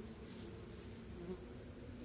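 Honeybees buzzing around a hive entrance: a faint, steady hum of several bees, its pitch wavering.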